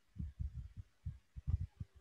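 Faint, muffled low thumps coming irregularly over a video-call audio line, about eight in two seconds, from a participant's microphone that is not passing a clear voice. The host suspects a headset fault.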